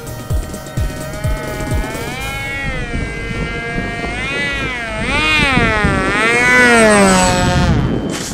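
Electric pusher-prop motor of a foam RC jet, its whine rising and falling in pitch as the throttle is worked while the plane comes in low overhead for a hand-catch landing; it cuts off suddenly near the end. Background music with a steady low beat fades out under it in the first couple of seconds.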